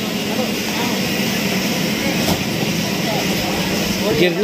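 Steady machine drone with a rushing, blower-like noise from a mechanical bull ride running, together with the air blower that keeps its inflatable landing mat filled.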